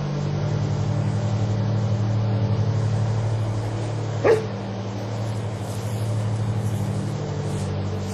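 A search-and-rescue dog barks once, sharply, about four seconds in while it searches a rubble pile by scent, over a steady low hum.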